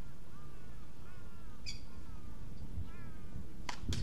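Small birds chirping in short, repeated arching calls. Near the end come two sharp pops in quick succession: a tennis ball bouncing, then being struck by a racket.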